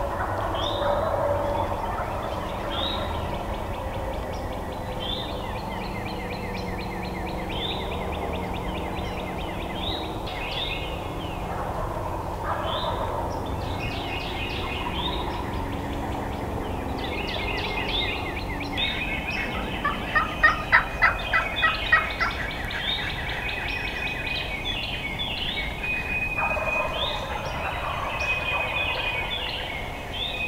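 Wild turkey gobbling in the distance over a dawn chorus of songbirds singing short repeated phrases. About two-thirds of the way in comes a loud, rapid series of sharp pulsed notes.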